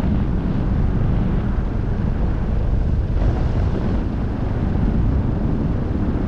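Steady low rumble of airflow buffeting the microphone in flight.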